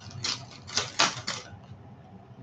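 A few quick clicking rattles of stone beads being handled, bunched in the first second and a half.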